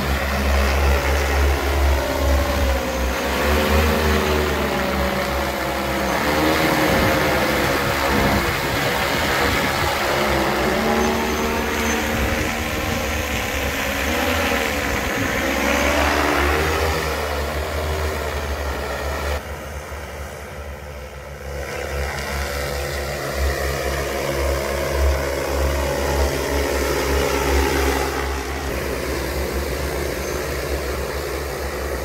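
Rotors of a large agricultural spraying drone running loud, a deep hum with a whine that rises and falls as the rotor speed changes during take-off and flight; the sound dips briefly about two-thirds of the way through.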